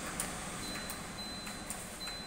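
Red 90 cm stainless-steel chimney range hood running on its third, highest fan speed, which the seller rates at 1200 m³/h: a steady rush of air. A thin high whine comes in about half a second in, and there are a few light clicks as the front control buttons are pressed.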